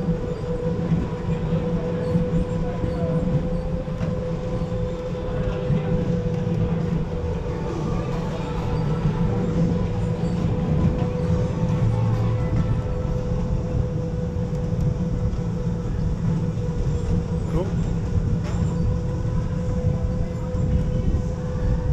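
Go-kart running around the track: a steady motor whine over a continuous low rumble of wheels on the floor.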